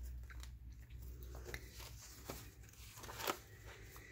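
Paper pages of a ring binder journal being handled and turned: soft rustling with a few light, sharp clicks and taps spread through, over a faint low hum.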